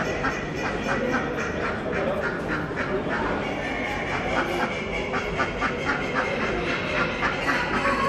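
Ducks quacking in quick runs of several calls a second, two runs with a short pause between, over a continuous background hubbub.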